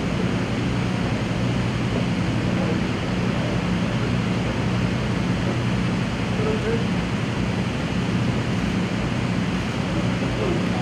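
Steady rushing background noise with a low hum underneath, unbroken and with no distinct events.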